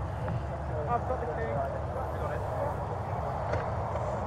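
Steady roadside traffic and wind rumble picked up by a police body-worn camera's microphone, with faint indistinct voices about a second in.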